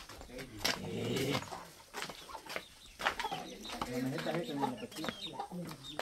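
Chickens clucking, faint against quiet background voices, with a few light knocks.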